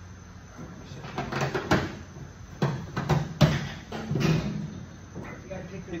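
A run of sharp clunks and knocks, bunched between about one and four and a half seconds in, with a low voice among them.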